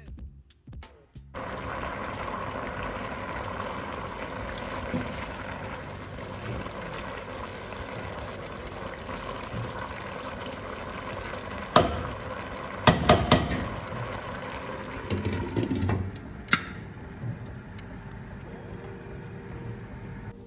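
A large pot of rice and stock boiling hard, with a steady bubbling hiss, as the rice is stirred in. A few sharp knocks of the spatula against the pot come about twelve and thirteen seconds in.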